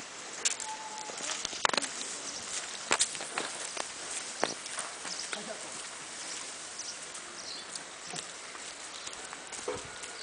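Footsteps on a dirt path with scattered light clicks and knocks, over steady outdoor background noise.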